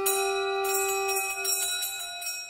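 Background music of ringing bell tones, several pitches held together and slowly fading.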